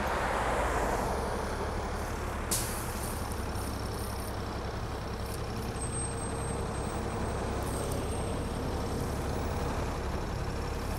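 A diesel city bus running as it pulls away, with a steady low engine rumble. About two and a half seconds in comes one short, sharp hiss of air from its air brakes.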